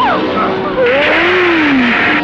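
A woman's sharp cry and then a long, drawn-out yell rising and falling in pitch. A harsh hissing noise sets in suddenly about a second in.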